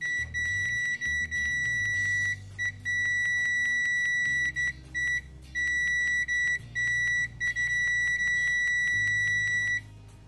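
Piezo continuity beeper of an ANENG AN8203 pocket multimeter sounding a steady high-pitched beep, fairly loud, on in long stretches broken by about ten short gaps, stopping just before the end.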